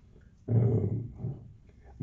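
A man's low voice through a microphone: a short, drawn-out vocal sound about half a second in, lasting under a second, between sentences of his speech.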